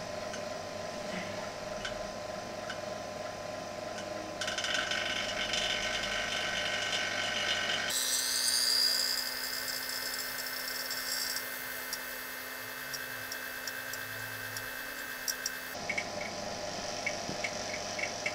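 Small electric vacuum pump running with a steady hum, drawing gas through the rig's lines. From about eight seconds in, a loud hiss with a brief falling whistle sets in as a valve is worked and gas is pulled through. It stops about two seconds before the end, leaving the pump's hum.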